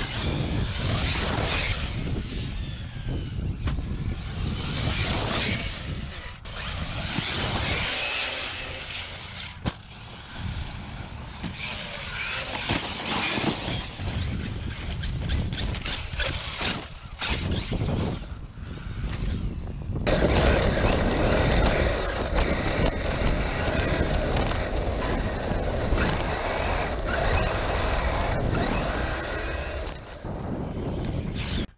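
Arrma Fireteam 1/7 RC truck's brushless electric motor whining up and down as it drives over loose dirt and rock, with tyres scrabbling and spraying dirt. About twenty seconds in, the sound turns abruptly into a louder, steadier rush.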